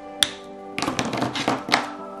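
Plastic art markers being handled while changing colours: a sharp click near the start, then about a second of clattering taps, over soft background music.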